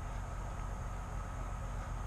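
Semi truck's diesel engine idling, a steady low rumble.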